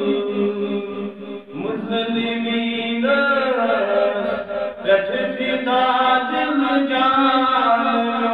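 A solo man's voice chanting a Kashmiri naat in long held notes that slide up and down, with short breaks for breath about a second and a half in and again near five seconds.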